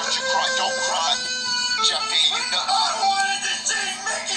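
An autotuned remix of a child-like crying voice: the sobs are pitched into a sung melody of held, stepped notes over a synthesized music track.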